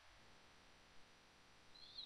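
Near silence: faint room tone, with one brief faint tick about a second in.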